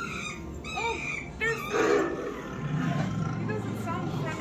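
Recorded animal calls and growls played from an exhibit's speakers: short pitched cries early, a rough burst about halfway, and a low growl in the last second and a half.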